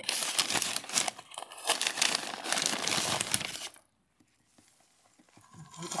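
Crinkling, rustling handling noise full of small sharp crackles, like plastic or soil being handled, for about four seconds, then it stops abruptly.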